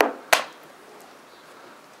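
Two sharp clacks about a third of a second apart: a plastic chess piece set down on the board and the chess clock button pressed, the quick rhythm of a blitz move.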